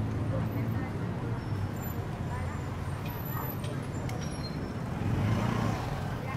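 Street traffic: a vehicle's engine rumbles steadily as it passes close by, with scattered voices in the background.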